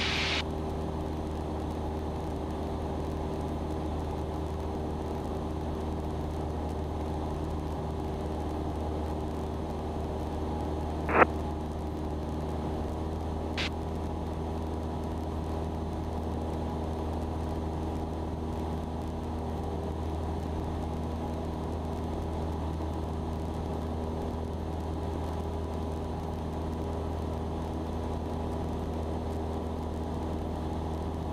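Cessna 172's piston engine and propeller droning steadily in cruise, heard from inside the cabin, with several fixed low tones under a noisy hiss. A short loud blip about eleven seconds in and a faint tick a couple of seconds later.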